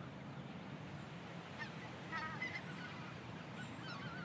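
Calls of a flock of geese in flight: a cluster of honks about midway, and a few more near the end, over a low steady outdoor ambience.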